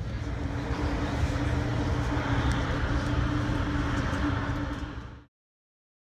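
Steady outdoor rumble and noise with a low, steady hum, cutting off suddenly about five seconds in.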